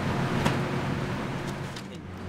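Loose peat-and-perlite potting mix rustling and scraping as it is filled and leveled off across a plastic seeding tray, with a light knock about half a second in, over a steady low hum. The rustling fades out near the end.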